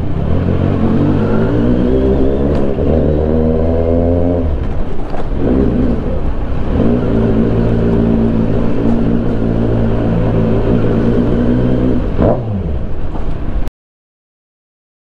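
Kawasaki Z900's inline-four engine revved and held twice, for about four and then five seconds, the pitch creeping up during the first and dropping back after each. The sound cuts off suddenly just before the end.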